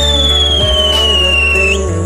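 A ground spinner (chakri) firework whistling, one long, loud whistle that slides slowly down in pitch and cuts off near the end, over background music.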